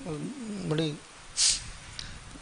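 A man's voice drawing out a single word with a wavering, sliding pitch, then a short hiss like a breath or an 's' sound.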